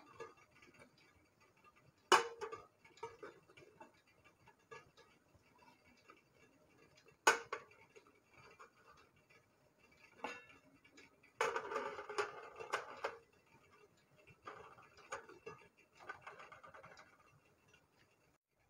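Small stainless steel cups of batter set down one by one on a perforated steel steamer plate: a few sharp metal clinks spread through, with longer stretches of softer handling noise in the second half.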